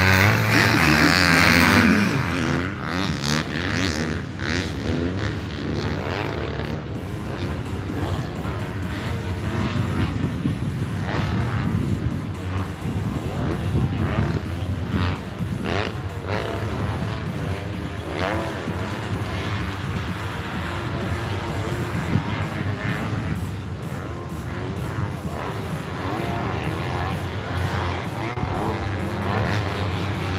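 Motocross bikes racing on a dirt track: a loud bike revving hard close by, its pitch rising. After about two seconds it gives way to a quieter, steady mix of bikes revving farther around the circuit.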